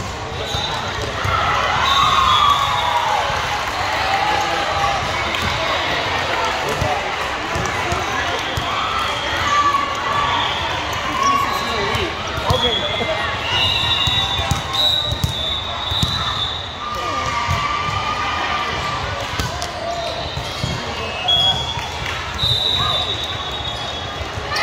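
Volleyball gym ambience in a large echoing hall: voices of players and spectators talking and calling, over repeated thuds of volleyballs being hit and bouncing on the court, with short high squeaks of sneakers on the floor.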